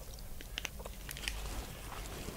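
Faint scattered crinkles and clicks of a plastic snack-bar wrapper being tugged and bitten at in an effort to open it.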